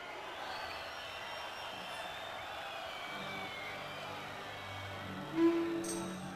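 A live band plays the soft instrumental opening of a pop song. Faint wavering tones come first, held low notes enter about three seconds in, and a louder sustained note sounds near the end.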